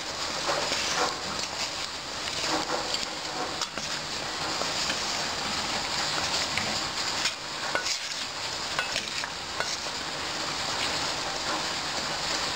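Diced vegetables sautéing in oil in a metal pot with a steady sizzle, stirred with a wooden spoon that scrapes and knocks irregularly against the pot.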